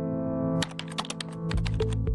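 Background music holding a chord, then, about half a second in, a rapid run of typing-style key clicks, about eight a second, laid over it as an on-screen caption types out. A low bass line comes in near the end.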